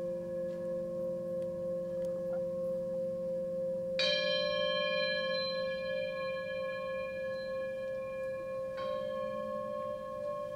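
Quartz crystal singing bowls sounding several steady, overlapping sustained tones. About four seconds in, a bright struck ring with many high overtones joins and fades slowly, and a softer strike follows near the end.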